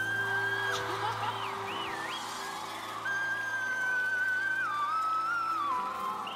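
A woman sings with a cheek retractor holding her mouth open, over backing music. She holds a long high note, sings a short broken phrase, then holds a second long note from about halfway that steps down in pitch near the end.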